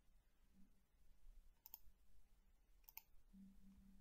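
Two faint computer mouse clicks, about a second and a half in and again about three seconds in, over near silence.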